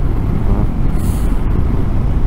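Wind rushing over the microphone together with the low rumble of a BMW R 1250 GS boxer-twin motorcycle riding along at steady speed, with a brief hiss about a second in.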